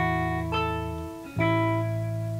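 Instrumental music on guitar: chords change about half a second in, then a last chord is struck about one and a half seconds in and left ringing, slowly fading as the song ends.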